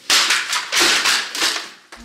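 Books thrown down onto a hard tiled floor: a quick series of slaps and clatters, about four, in under two seconds.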